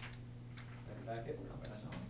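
Quiet classroom room tone: a steady low electrical hum, a few light clicks, and a brief faint voice about a second in.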